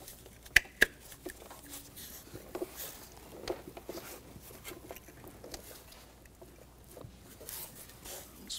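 Two sharp plastic clicks about half a second in, a third of a second apart, then faint small clicks and handling noise as wiring-harness connectors are pushed onto the ignition coil packs.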